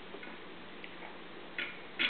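A few light, irregular clicks and clacks from a wooden toddler activity cube being handled: beads and wooden pieces knocking together, with a louder clack near the end.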